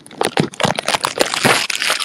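Dense crackling and rustling noise, a quick run of clicks over a hiss.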